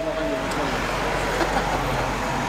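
Street traffic noise: a motor vehicle going by, heard as a steady noisy hum that sets in at the start and holds level throughout.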